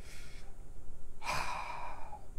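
A man breathing between phrases: a short faint breath, then a longer, louder sigh a little over a second in.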